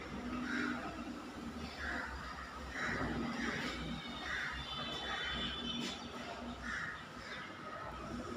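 A bird calling outside, about seven short calls roughly a second apart, over a steady low background hum.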